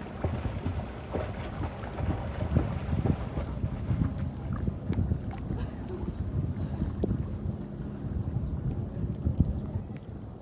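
Shallow sea water sloshing and lapping around a phone held at the surface, with wind buffeting the microphone; the sound is uneven, with frequent low, irregular splashes and knocks.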